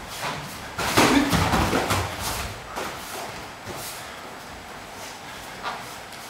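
Nippon Kempo sparring exchange: a rapid burst of blows landing on protective armour about a second in, loudest at its start, followed by a few scattered thuds and footfalls on the mat.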